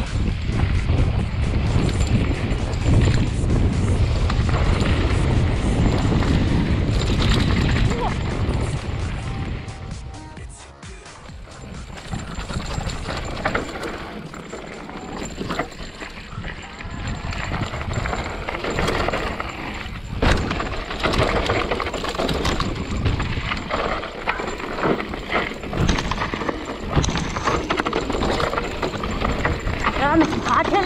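Wind rushing over the camera microphone and a hardtail e-mountain bike rattling and clattering as it rolls down a rough gravel trail at speed. The rush eases briefly about ten seconds in, then the clatter of the frame and chain over stones goes on.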